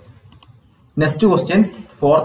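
A few faint computer-keyboard clicks in the first half second, then a man speaking from about a second in.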